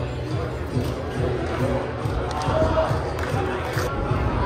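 Voices and crowd noise echoing in a large hall, with music and a steady low thumping beneath.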